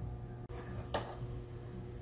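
Quiet room tone with a steady low hum, broken by two small clicks, the sharper one about a second in.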